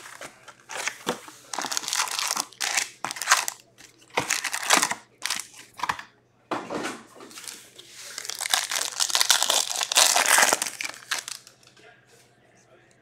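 Foil hockey card packs crinkling as they are handled and taken from a cardboard hobby box, then a pack being torn open, in an irregular run of crinkles and rips. There is a short pause about six seconds in, and the crinkling is densest near the end.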